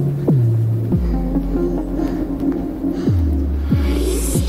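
Opening of a downtempo psy-chill electronic track: a sustained synth drone under deep bass notes that each swoop sharply down in pitch and then hold, four times.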